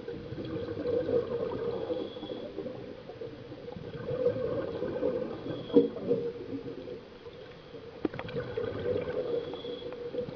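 Underwater bubbling and gurgling in surges about every three to four seconds over a steady low hum, typical of a scuba diver exhaling through the regulator. There is a single sharp click near the end.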